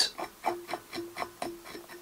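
Velcro brush rasping through black seal-fur dubbing on a fly's body in quick short strokes, about four a second, pulling the fur out.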